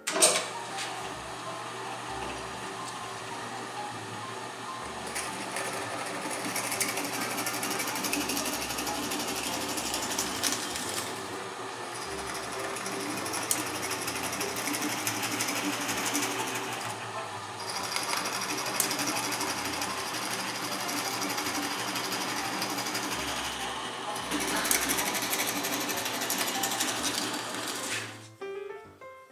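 Drill press running, boring a series of 3/8-inch holes through a wooden turning blank. The motor's steady hum runs under the hiss of the bit cutting, which swells and eases from hole to hole, with short breaks about 12 and 17 seconds in.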